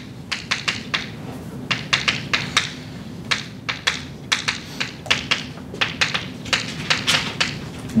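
Chalk tapping and clicking on a blackboard while writing: a quick, irregular run of sharp taps over a faint steady hum.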